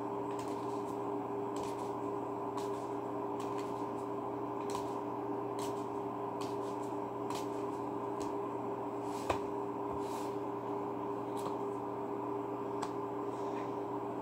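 A deck of Neapolitan playing cards being shuffled and handled, with faint papery clicks roughly once a second and one sharper click about nine seconds in. A steady low hum runs underneath.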